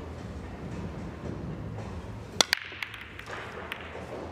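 Nine-ball break shot in pool: two sharp cracks about two and a half seconds in as the cue strikes the cue ball and the cue ball smashes into the racked balls. A scatter of lighter clicks follows as the balls knock into each other and the cushions. Before the break there is only low steady hall noise.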